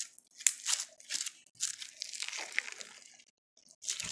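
Blue slime mixed with white rice being stretched and squeezed by hand, giving irregular crunchy crackles in short bursts with brief pauses between them.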